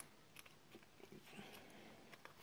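Near silence, with a few faint light clicks of fingers handling a laptop RAM module as it is set into its slot.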